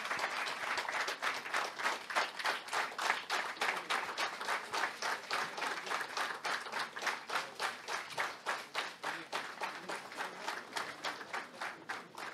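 Audience applauding, starting suddenly and clapping in a fairly even rhythm, easing off slightly toward the end.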